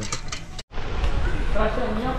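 A man talking over a steady low rumble on the microphone. The sound drops out completely for an instant about two-thirds of a second in.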